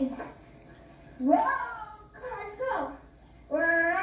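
A child's voice from a television's speaker: four short high calls or words with rising, bending pitch, after a quiet first second.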